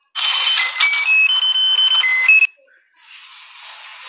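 A short electronic beeping tune: a run of flat high beeps stepping up and down in pitch for about two and a half seconds over a hiss, cutting off suddenly.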